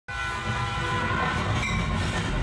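Steam train sound effect: a train whistle sounds at once, fading over about a second and a half, over a steady chugging rumble.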